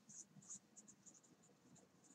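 Felt-tip marker writing on a slip of paper, very faint: a quick run of short, high scratchy strokes.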